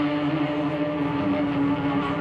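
Live rock band playing: an electric guitar holds one long sustained note over bass and a dense full-band mix.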